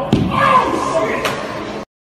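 A heavy thud of a person landing hard on a tiled floor just after the start, followed by voices reacting; the sound cuts off suddenly near the end.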